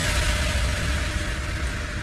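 Electronic dance music in a breakdown: a deep bass rumble under a wash of noise, slowly fading.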